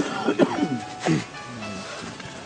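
Several voices of mourners around the body overlap, opening with a sharp cough-like vocal burst and followed by drawn-out vocal sounds that rise and fall in pitch.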